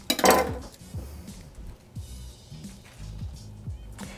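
Quiet background music with a soft bass line. A brief clatter of glass and crushed ice sounds about a quarter second in as the iced glass is handled.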